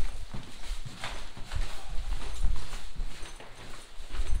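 Footsteps walking along a hard-floored corridor: a run of irregular low thuds. A heavier thump comes right at the start.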